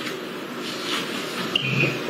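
Rustling handling noise from a phone on a video call, heard through the call's audio as the phone is moved and touched, with a brief faint tone near the end.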